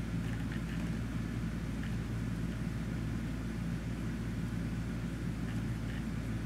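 Steady low hum of room tone, unchanging throughout.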